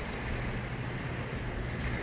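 Steady wind noise on the microphone over small lake waves lapping in shallow water, with a faint low steady hum underneath.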